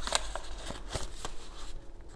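A deck of cards being shuffled by hand: soft, irregular card clicks and slaps, several a second.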